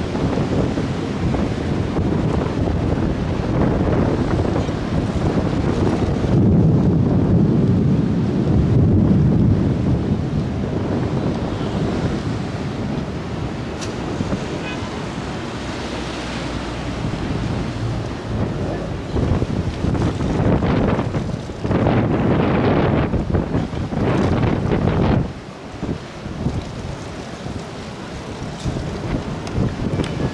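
Wind buffeting the microphone over the wash of surf, coming in irregular gusts. The strongest gusts come about 6 to 10 seconds in and again in sharp surges between about 20 and 25 seconds.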